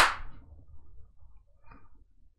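A single sharp hand clap right at the start, ending a quick run of claps. It rings away within about half a second into a quiet room.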